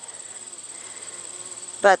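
A steady, high-pitched insect trill with a fast, even pulse, continuing unchanged throughout.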